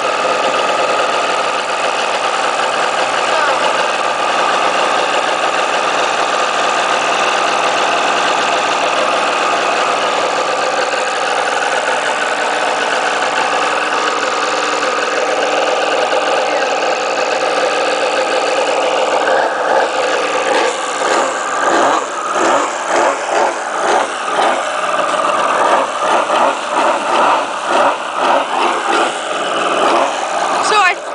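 An engine running steadily at idle. In the last third it begins to surge up and down in quick repeated swells, about one or two a second.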